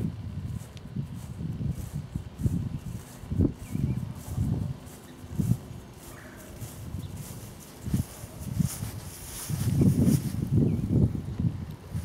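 Footsteps on grass: soft, uneven thumps about twice a second. Near the end come denser rumbling and rustling from a handheld camera being moved in close.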